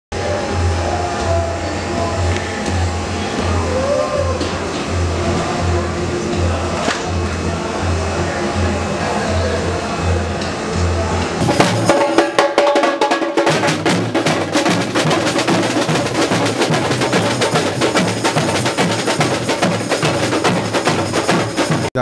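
Samba drumming: for the first half a steady deep bass-drum beat under some voices, then from about halfway a full samba bateria playing loud and dense, with surdo bass drums, snare drums and tamborim.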